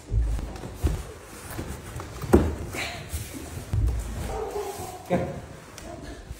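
Dull thumps and knocks of a large cardboard-boxed dresser being carried on a staircase, with the movers' heavy footsteps. One sharp knock a little over two seconds in is the loudest.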